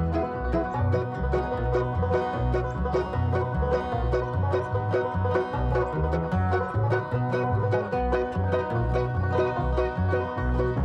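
Bluegrass band playing: resonator banjo picking over an upright bass that thumps out steady notes about two a second, with mandolin and acoustic guitar filling in.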